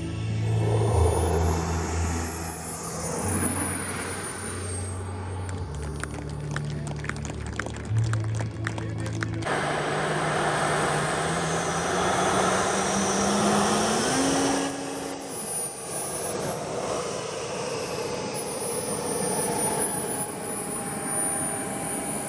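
Background music with a steady bass line plays over the high whine of a jet model's twin turbine engines and stops abruptly about nine seconds in. After that the turbines' whine and rush are heard alone as the model lands and taxis. A low hum rises in pitch for about five seconds and then drops away.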